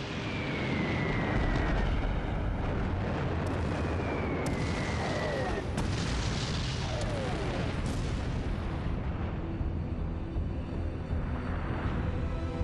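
Dubbed sound effects of an aerial bombing attack: a continuous rumble of explosions with two falling whistles, one right at the start and one about four seconds in.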